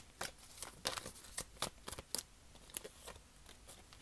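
Tarot cards being handled and shuffled: a quick run of light card snaps and clicks for about two seconds, thinning to a few scattered clicks after that.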